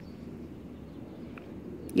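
Quiet outdoor background ambience: a low steady rumble with no distinct source, and one faint short tick about one and a half seconds in.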